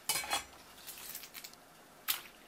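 Wet squelching and slapping of raw bigfin reef squid being pulled apart and handled on a wooden cutting board: a loud burst just after the start, then a few softer crackles about a second in.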